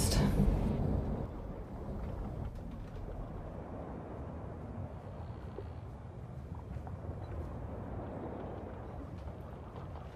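Steady low rumble of a motorboat's engine, louder in the first second and then level.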